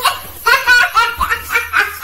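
A person laughing in a run of short, evenly spaced bursts, about four a second.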